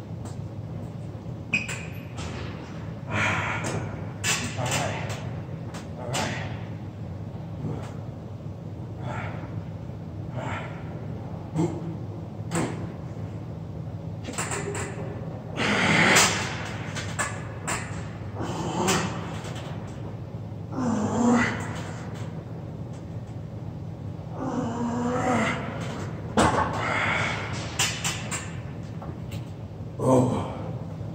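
Star Trac plate-loaded chest press worked through a set under four 45 lb plates: clunks and knocks from the lever arms and plates, with a man's strained grunts and exhalations on the heavy pushes, over a steady low hum.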